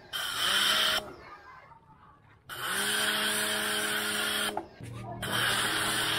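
Kawasaki HPW 220 electric pressure washer spraying through a foam-bottle gun in three bursts, its motor and pump humming steadily during each burst and falling quiet for about a second and a half between the first two. With soap being drawn in, the pump's water intake is running short.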